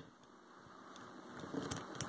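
Faint handling of a plastic action figure: almost silent at first, then soft rubbing and a few light clicks in the second half as its arms are moved.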